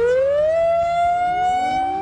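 Industrial site major emergency alarm: a wailing siren whose single tone rises quickly, then keeps climbing slowly and steadily. It is the signal to go immediately to a refuge area.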